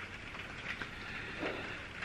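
Faint, steady background hiss of room noise during a pause in talk, with a brief soft sound about one and a half seconds in.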